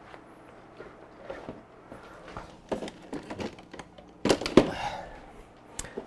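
Handling noise of scattered knocks and rubbing, with a louder cluster of knocks a little after four seconds in, over a faint steady hum.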